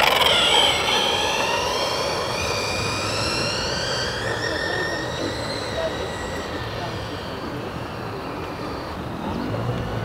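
Electric motor and drivetrain of an RC Red Bull RB7 F1 car whining at speed. The whine is loudest at the start, then falls steadily in pitch and fades as the car runs away.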